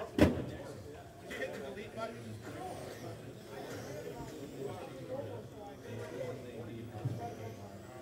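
Indistinct voices talking in a large hall, with one sharp knock just after the start, the loudest sound here.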